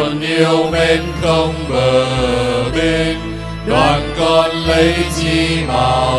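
A Vietnamese Catholic hymn sung in held, gliding notes over an instrumental accompaniment of sustained bass notes that change every second or two.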